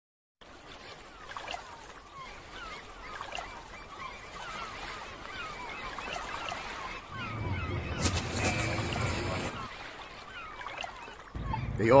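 Gulls calling again and again over the steady wash of ocean waves, the surf getting louder about seven seconds in. Shortly before the end it cuts abruptly to louder street noise.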